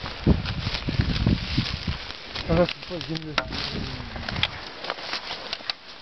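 Rubber boots tramping and stamping on dry grass and loose earth, packing soil into a hole in an earthen dam: a quick run of dull thuds and crunches in the first two seconds, then scattered light crackles of dry grass.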